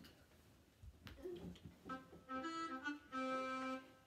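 A recorded children's song backing track starting up about halfway in: a few short held notes, then one long held note. Before it, faint soft knocks.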